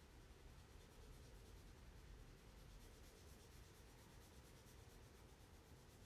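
Near silence, with faint rapid scratching of a pen or stylus colouring in a drawing.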